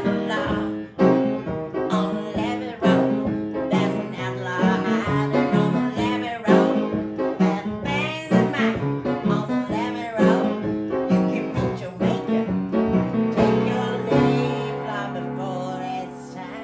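Upright piano played with both hands in a blues tune, a woman's voice singing along over repeated chords. About fourteen seconds in, a long chord is held and rings out while the singing stops.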